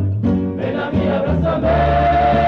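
A rondalla, a chorus of voices with plucked-string accompaniment, singing a slow ballad; about one and a half seconds in the voices settle onto a long held note.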